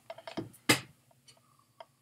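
Plastic DVD case being handled and turned over in the hands: a few light ticks, with one sharper click a little before one second in.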